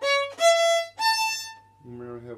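Violin, bowed: three separate rising notes of an arpeggio, second finger on the A string, then open E, then third finger on the E string, each about half a second long, the last fading away well before the end.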